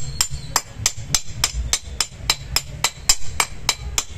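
Repeated sharp metal-on-metal knocks, about four a second, from a hand-held metal tool tapping a new 608 ball bearing into its seat in a mixer grinder's motor end housing, driving the replacement bearing home.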